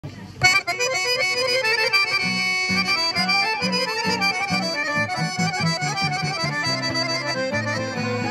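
Small Roma folk band playing live, led by accordion with acoustic guitar and clarinet. The music starts about half a second in, and a steady rhythmic bass beat comes in at about two seconds.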